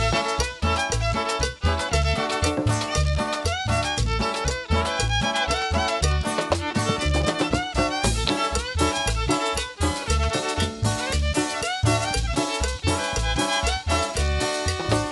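Live chanchona band playing an instrumental dance passage with the violin carrying the melody over upright bass, guitar and drums, to a steady beat.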